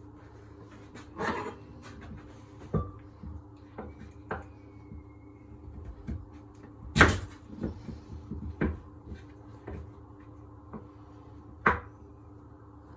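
Knife cutting a raw sweet potato into wedges on a wooden chopping board: irregular knocks of the blade striking the board, the loudest about seven seconds in.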